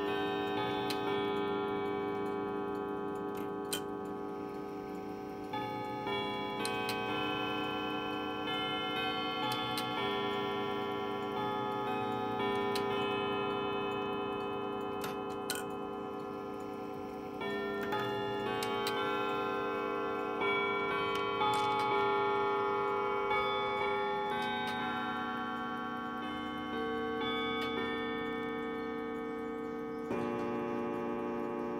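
Chiming bracket clock playing its chime: a slow sequence of bell-like notes, each ringing on and overlapping the next, with the movement ticking underneath.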